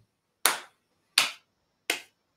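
Three hand claps, evenly spaced about 0.7 s apart.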